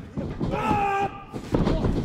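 A man's voice: a drawn-out vocal exclamation, then another short vocal sound near the end.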